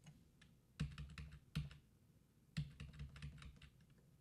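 Keys being typed on a computer keyboard in two short runs of clicks, the first about a second in and the second about a second later.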